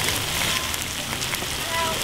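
Sausages and sliced onions sizzling steadily in large hot frying pans, an even, continuous hiss.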